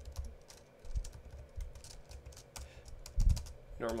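Computer keyboard typing and deleting: a run of irregular key clicks, with a low thump a little after three seconds in.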